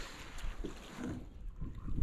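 Faint wind on the microphone and water lapping against a small boat's hull, with a few light knocks.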